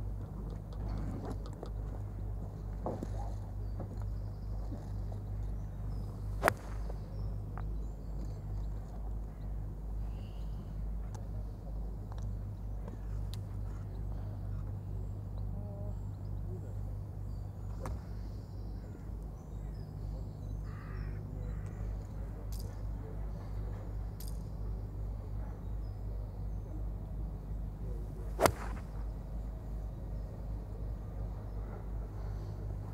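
Golf club striking a ball off turf twice, sharp single hits about twenty seconds apart, the second the louder, over a steady low hum. Faint bird calls in between.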